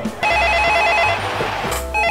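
Office desk telephone ringing with an electronic warbling trill, two ring bursts, the second starting near the end, over background music.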